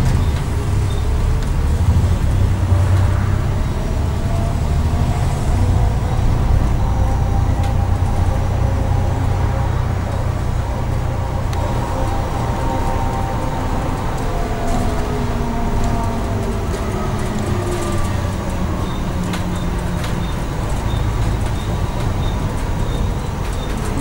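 A bus in motion heard from inside: the engine and driveline run with a steady low rumble over road noise, and a whine rises and falls in pitch as the bus speeds up and slows. Near the end a faint regular ticking comes in.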